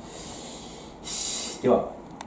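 A person's breathing: a soft hiss, then a louder snort-like nasal breath about a second in, followed by a short, loud vocal sound near the end.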